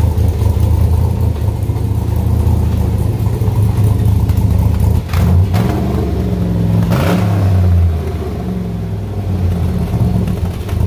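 Corvette Sting Ray's 6.2-litre LS V8 idling through side-exit side pipes, revved briefly twice: once about halfway through and again about two seconds later.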